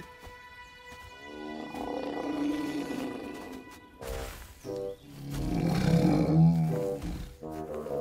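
Background music, then a loud, deep animal roar lasting about two seconds, starting about five seconds in.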